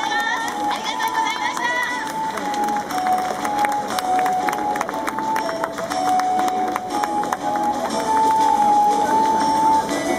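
A song with a sung melody of held, stepping notes playing over a stadium's loudspeakers, with crowd noise beneath and scattered sharp clicks two to five seconds in.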